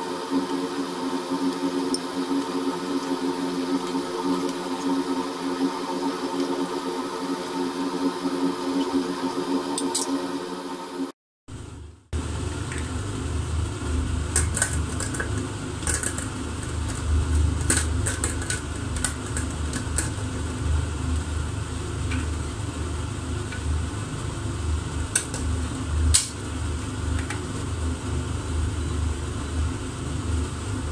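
A pot boiling uncovered on an induction hob, with a steady hum of several tones. After a cut there is a low rumble with scattered clicks and taps as the pressure cooker's lid handle is fitted and locked.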